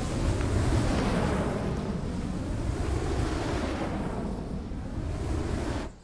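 Steady, low rushing rumble from an end-screen animation's sound effect, without any melody. It drops away just before the end.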